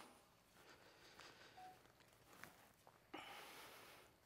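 Near silence: room tone, with a few faint ticks and a soft noisy hiss near the end.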